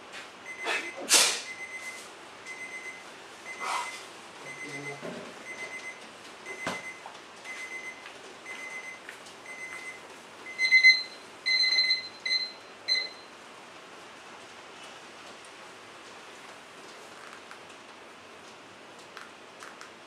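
An electronic device beeping: a steady run of short high-pitched beeps at one pitch, a little under two a second, then a few louder, longer beeps about eleven to thirteen seconds in. A brief burst of rustling noise comes about a second in.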